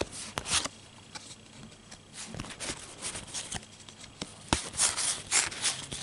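Paper trading cards being leafed through by hand, sliding and rubbing against each other in a scatter of short, soft brushing flicks, with a cluster of them near the end.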